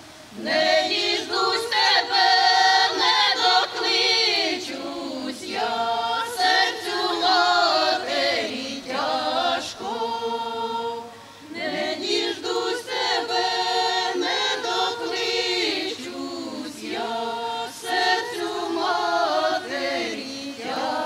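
A women's village folk choir singing a Ukrainian folk song unaccompanied, several voices together. There are short breaks between phrases just after the start and about halfway through.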